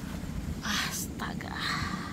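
A person whispering close to the microphone: two breathy bursts, the second near the end, over a steady low rumble.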